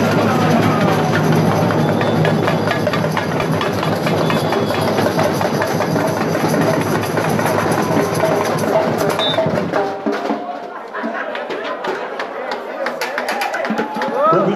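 Samba bateria (drum section) playing live: a dense, driving samba rhythm of bass drums and sharp snare and small-drum hits. About ten seconds in the full section drops out, leaving sparser hits under crowd voices.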